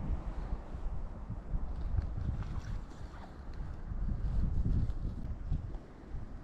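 Wind buffeting the microphone: a gusty low rumble that rises and falls, with a few faint light ticks mixed in.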